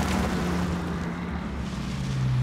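A vehicle's engine running with rushing road noise, starting abruptly at full level. Its low hum steps down in pitch about halfway through.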